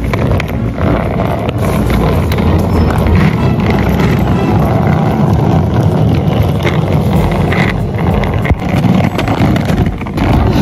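Hard-shell rolling suitcase's wheels rattling over rough asphalt as it is pulled along, a loud steady grinding rumble.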